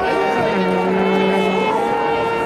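Marching band playing a long held chord of several sustained notes, with a lower note joining about half a second in and dropping out shortly before the end.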